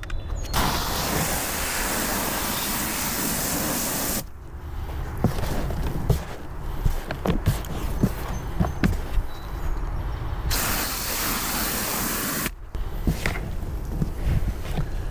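Water spraying onto dry peat moss in a plastic bin, a steady hiss for about four seconds and again for about two seconds near the end, wetting the peat so it takes up moisture. Between the sprays, gloved hands work the damp peat moss, crackling and crunching with many small clicks.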